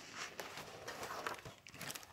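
Faint handling noise: soft rustles and light taps scattered through, as a hand moves close to the microphone.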